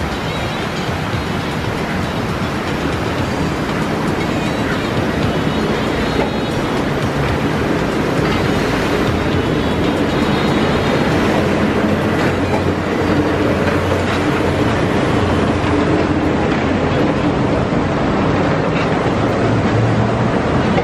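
Walt Disney World monorail trains passing close overhead on the concrete beamway: a steady, loud rolling rumble of the rubber-tyred trains, growing slightly louder in the second half as a second train comes alongside.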